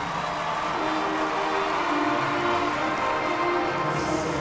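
HBCU marching band playing, with the brass holding long sustained notes and chords.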